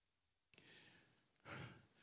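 A man exhales into a handheld microphone, briefly and faintly, about one and a half seconds in; otherwise near silence.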